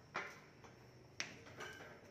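Clear plastic bag covers on parked scooters crinkling as they are brushed against: two sharp crackles about a second apart, with softer rustling after the second.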